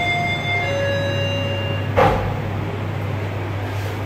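Elevator arrival chime: two descending electronic tones, a short higher one then a longer lower one, as the Guangri machine-room-less lift car reaches its floor. About two seconds in comes a single clunk, over a steady low hum.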